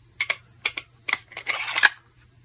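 Knife blade clicking and scraping against a hard plastic sheath as it is worked in: a run of sharp separate clicks and short scrapes, the loudest near the end.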